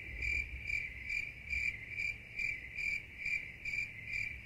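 Crickets chirping: a steady high trill that swells and fades about twice a second.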